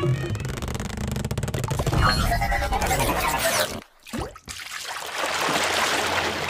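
Electronic intro sound effects and music for a channel logo animation, with a brief break in the sound about four seconds in before a steady noisy rush resumes.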